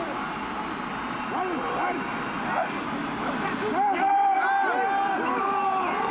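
Men's shouted calls from the football field: pre-snap signals and cadence at the line of scrimmage, with several longer held shouts as the play gets under way. A steady hiss of field noise lies underneath.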